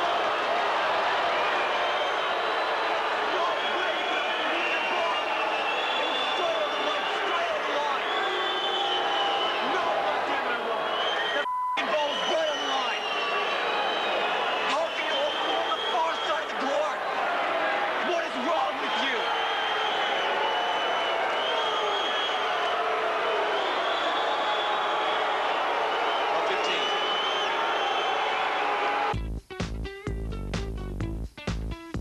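Crowd noise in a tennis arena: many voices at once with whistles sliding in pitch, keeping up steadily, broken by a brief dropout about twelve seconds in. Near the end, electronic TV ident music cuts in.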